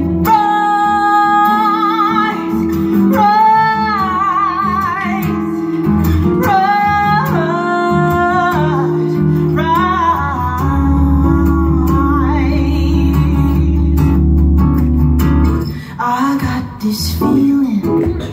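Live band music: a woman sings long held notes with vibrato over guitar and a keyboard's sustained low notes. The music drops briefly near the end.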